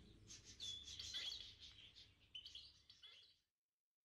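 Near silence with faint bird chirping: scattered short, high chirps over a low hum, cutting off a little after three seconds in.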